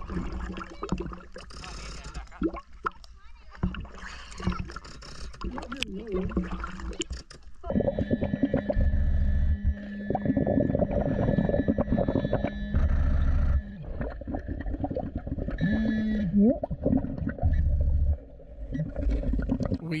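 Lake water sloshing and lapping against the camera at the surface for the first seven seconds or so. The camera then goes under: muffled underwater noise with a diver's exhaled bubbles rumbling about every four seconds, steady tones, and a brief gliding tone near the end.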